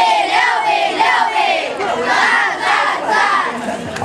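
A class of schoolchildren shouting a cheer together in unison, in short rhythmic phrases.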